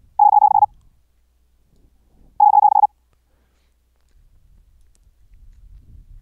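Two short bursts of very high-speed Morse code (CW), about two seconds apart, keyed as a pure sine tone of about 830 Hz. Each burst is one whole word sent at about 130 words per minute, so it lasts only about half a second.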